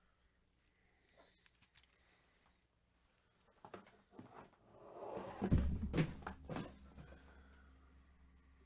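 A few clicks and knocks of objects being handled, then a heavier thump about five and a half seconds in, with more knocks after it and a low steady hum from the thump onward.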